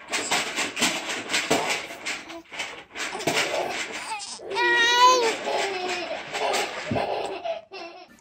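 Laughter in quick breathy pulses, with one high-pitched squeal that rises then falls about five seconds in.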